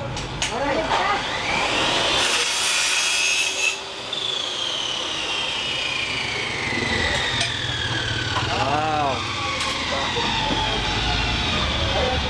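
Electric power saw spinning up, cutting noisily for about a second and a half, then switched off, its motor winding down in a long, slowly falling whine.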